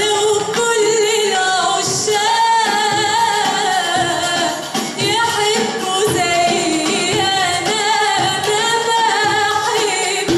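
A woman singing an Arabic song live into a microphone, her voice held in long, wavering ornamented lines, over an accompanying Arabic ensemble with oud and strings.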